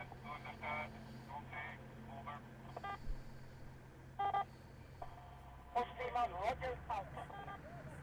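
Military radio voice traffic, hard to make out, over a steady low hum. About six seconds in comes a run of sharp clicks and sliding tones.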